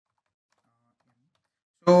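Very faint computer keyboard typing in near silence, then a man's voice starts speaking near the end.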